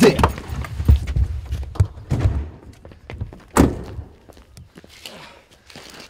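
Handling noise and small knocks as people climb out of a car, then a single loud thunk of a car door being shut about three and a half seconds in.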